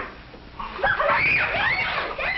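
Several children shrieking and squealing with excitement, several high voices overlapping and sliding in pitch, starting about half a second in.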